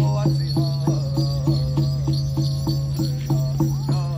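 Drum beaten in a steady, even rhythm, about three beats a second, with a high singing voice over it, the music for a Native American hoop dance.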